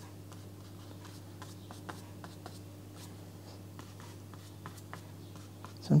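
A wide flat watercolour brush stroked over wet watercolour paper, many short, faint, irregular scratchy strokes.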